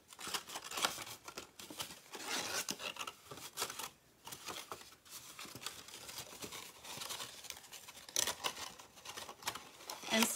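Cardboard mini shipping box being folded along its score lines and handled: irregular rustles, crinkles and light scrapes of stiff paper.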